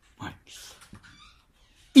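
A pause in a man's talk that holds only a few faint short sounds and a brief soft hiss. His voice starts loudly again at the very end.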